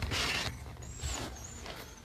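A short rustle of handling noise at the start, then a few faint, thin, high-pitched squeaks, about a second in and again near the end, while a metal wire dog crate and the camera are being handled.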